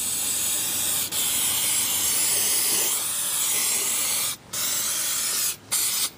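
Aerosol can of rust-converting spray hissing steadily as it is sprayed on, let off briefly twice near the end.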